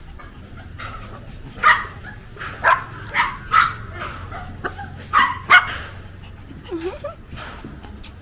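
Indian Spitz puppies yapping, about six sharp high barks in a quick irregular run in the middle, while they jump up for watermelon held out to them.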